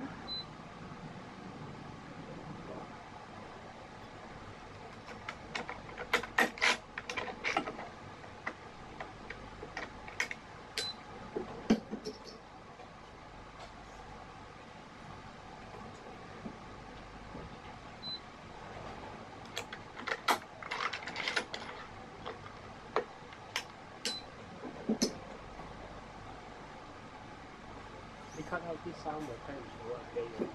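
Yonex BG66 badminton string being woven by hand through a racket's strings and frame on a stringing machine: clusters of short clicks and rasps as the string is pulled through, with a quieter stretch in the middle, over a steady low room hum.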